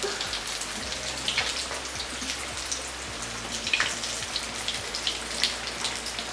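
Vegetable cutlets deep-frying in hot oil in a pan: a steady sizzle with many small crackling pops.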